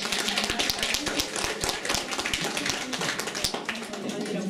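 Applause from a small group of people clapping by hand, thinning out and stopping near the end.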